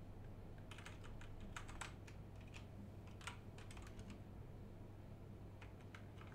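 Faint, irregular keystrokes on a computer keyboard as a command line is typed, over a steady low hum.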